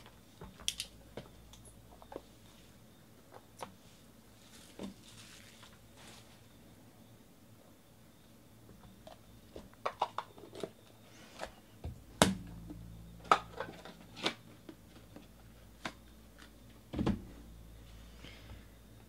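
Hands opening and handling a trading-card box and its pack: scattered light clicks and taps of cardboard and plastic, a short rustle about five seconds in, and a few sharper knocks in the second half.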